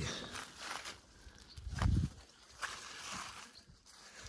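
Rustling and handling sounds of someone moving through zucchini plants and grass, with a dull low thump about two seconds in.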